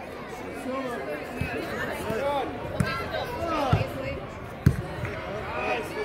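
Several dull thuds of a soccer ball being kicked on artificial turf, the loudest about three-quarters of the way through, over a background of overlapping voices calling and talking in a large echoing indoor hall.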